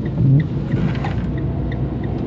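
Steady engine and road rumble heard from inside a moving van's cab, with a brief louder low swell just after the start. A faint, regular ticking runs through it at about two to three ticks a second.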